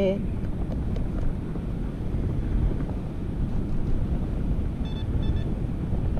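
Steady wind rumble buffeting the microphone. About five seconds in comes a brief run of quick, high electronic beeps.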